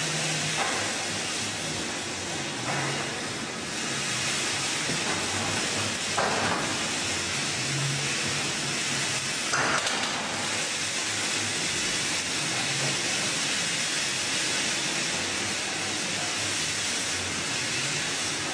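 Steady hissing barn ambience with a faint low hum, broken by a few short higher-pitched sounds a few seconds apart.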